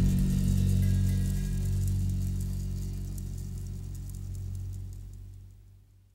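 The last chord of a heavy rock song ringing out on guitar and bass, a low held drone that decays steadily and fades to silence near the end.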